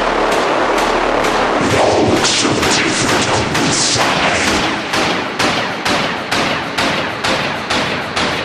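A section of an electronic techno track dominated by a dense noise wash and sharp, rapid hits. From about five seconds in the hits fall evenly, a little over twice a second, each one fading quickly.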